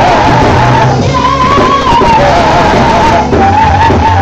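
Women's voices singing a praise and worship song into microphones through a PA, over instrumental backing with a steady bass line; the sung melody wavers and rises briefly about a second in.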